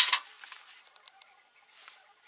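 A sharp click at the start, then a few faint scattered ticks and crackles over a low hiss.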